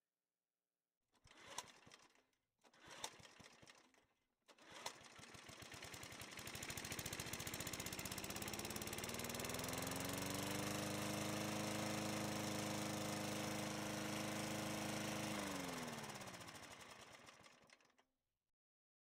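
A few short sounds, then a motor spins up over several seconds, runs steadily with a fast pulse, and winds down in pitch before fading near the end.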